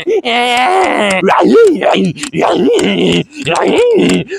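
A man's loud wordless vocalizing: groaning, wailing syllables. It opens with a long wavering held note, then a string of short notes that swoop up and down in pitch, with short breaks between them.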